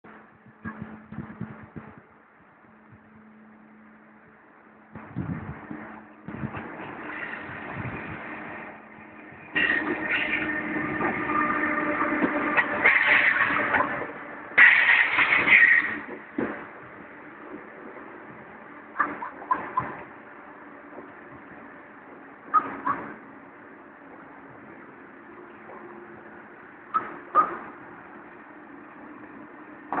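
Renfe AVE 'Pato' (Talgo 350) high-speed train pulling slowly into a station, its running noise building and loudest for several seconds in the middle, with steady tones through it. A few short, sharp knocks follow as it rolls past.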